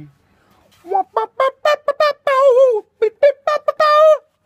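A man's voice in a quick run of short, high-pitched falsetto yips and calls, several a second, with a wavering, drawn-out one in the middle, starting about a second in.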